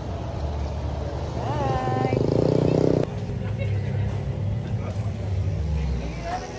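Road traffic with a nearby vehicle engine running, loudest for about a second before it cuts off abruptly about three seconds in, leaving a low rumble and faint background chatter.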